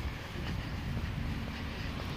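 GVB Siemens Combino tram running slowly past at close range around a terminal loop: a steady low rumble.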